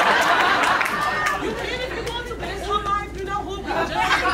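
Audience laughing and chattering. The laughter thins after about a second and a half into scattered voices.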